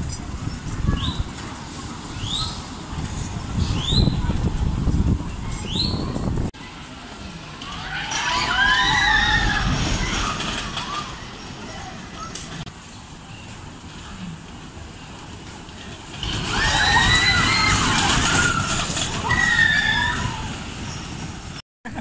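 Old wooden scenic-railway roller coaster train rumbling along its track, with short rising squeaks in the first few seconds. Later come two longer stretches of shrill, wavering screeching or screaming as the train passes.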